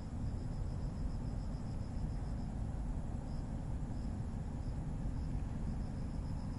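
Crickets chirping in a thin high pulsing series, about six or seven chirps a second at first, then a few spaced chirps, picking up again near the end, over a steady low rumble.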